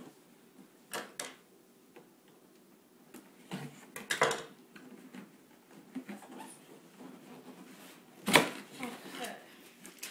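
Cardboard box being opened by hand: scattered rustles and scrapes of cardboard, with a loud burst about eight seconds in as the box top comes open.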